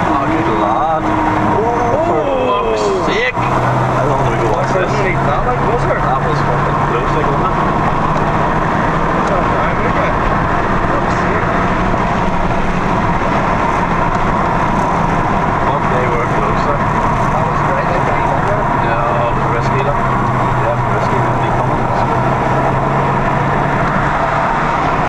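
Inside a Mk4 Volkswagen Golf GTI at high speed, about 110 mph: a steady engine drone with heavy wind and road noise. The drone settles in about three seconds in.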